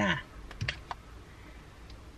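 A few light clicks about half a second to a second in, from a hand-held screwdriver and its bit being handled.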